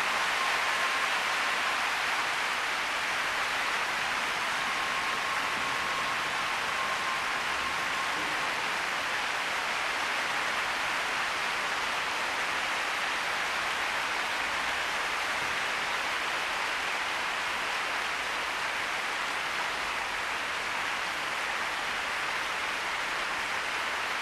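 Large arena crowd applauding: dense, even clapping that holds at one level throughout.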